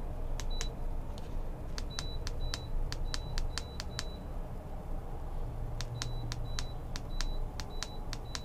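Rapid button presses on a Minn Kota i-Pilot Micro Remote, each giving a sharp click and a short high beep, as the trolling motor's speed is stepped up. The presses come in two quick runs of about five a second, with a pause of about two seconds between them, over a low steady hum.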